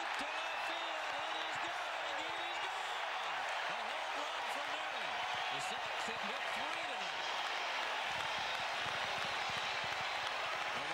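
Baseball stadium crowd cheering and applauding a home run: a steady, dense wash of many voices with individual shouts rising and falling through it.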